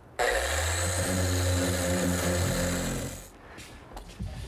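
Random orbit sander running steadily on pine, sanding joints smooth and flush: a steady motor hum with a hiss of sandpaper on wood. It starts abruptly just after the start and winds down about three seconds in.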